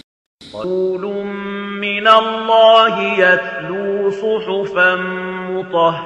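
A single reciter chanting a Quran verse in Arabic in melodic tajweed style, with long held, slowly gliding notes. It starts after a brief silence at the beginning.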